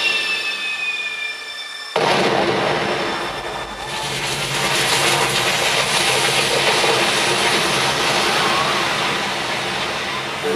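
Fountain water jets firing with a sudden loud rushing hiss about two seconds in, then spraying steadily. Just before it, the last notes of the previous music fade out on a falling tone.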